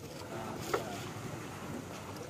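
Fishing-harbour ambience: a low steady rumble with faint background voices and a single sharp knock a little under a second in.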